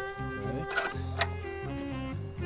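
Jazzy instrumental background music with held notes over a bass line, with two sharp clicks a little before and after the middle.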